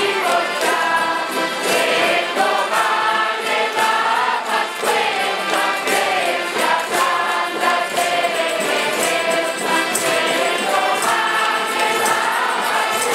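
A large group singing together to the accompaniment of many accordions and acoustic guitars, playing a folk song with a steady beat.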